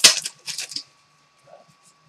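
Foil trading-card pack wrapper crinkling as it is torn open by hand, a handful of sharp crackles in the first second, the first the loudest.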